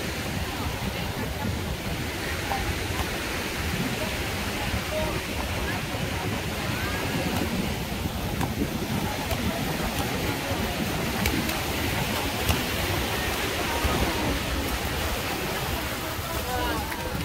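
Busy beach ambience: a steady rush of small waves breaking at the shoreline, with voices of beachgoers talking around.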